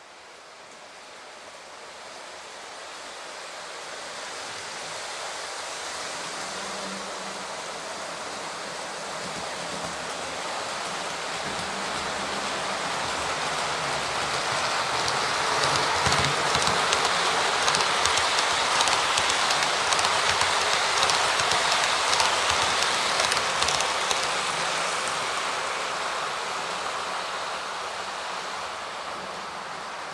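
A train rolling past: a rushing rail noise that builds slowly, is loudest in the middle with rapid clicking from the wheels on the track, then fades away.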